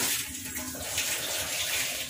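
Water running steadily into a metal cooking pot holding pork belly and aromatics, filling it so the meat can be boiled.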